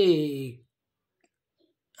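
A voice trailing off at the end of a spoken word with a falling pitch, then near silence for over a second before speech resumes.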